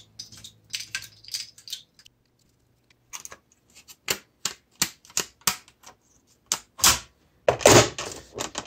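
Irregular sharp clicks and taps of small plastic instrument-cluster parts and tools being handled on a bench as the cluster's stepper motors and gauge needles come off, with a short pause about two seconds in.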